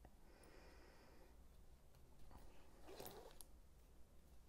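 Near silence, with faint rustling of hands handling a watch on a fabric NATO strap, briefly a little louder about three seconds in.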